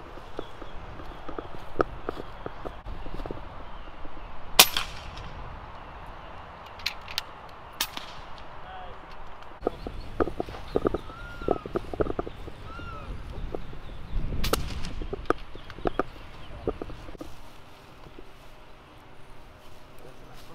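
Air rifle shots: a sharp crack about four and a half seconds in, the loudest sound here, and a second sharp report about ten seconds later. Both are shots at an iguana.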